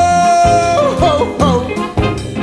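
A song with a band: a singer holds one long high note, then breaks into quick up-and-down turns in pitch, over a steady beat of drums and bass.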